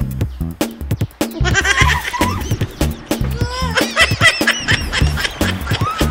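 Background music with a steady beat and a repeating bass line, with bursts of high, gliding melody in the middle.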